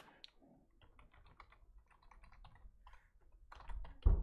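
Computer keyboard typing, faint, in quick irregular runs of keystrokes, with a dull thump just before the end.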